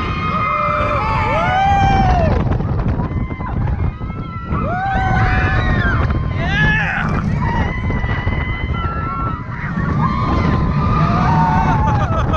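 Gerstlauer roller coaster train running fast along its track, with a heavy rumble and wind rushing over the onboard camera's microphone. Riders scream and whoop over it again and again.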